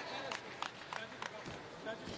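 Men's voices calling out over the background noise of a fight arena, with a few short, sharp knocks in the middle.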